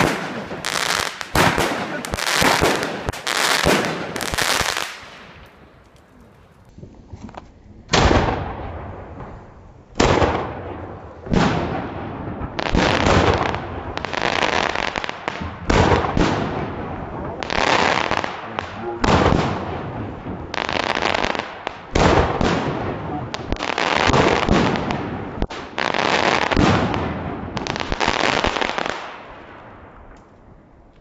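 A Wolff 7-shot fireworks cake firing: a quick run of sharp shots and overhead bursts, then a short lull. From about eight seconds in, a long series of bursts follows every second or two, heard played back slowed down, so they sound deeper and more drawn out.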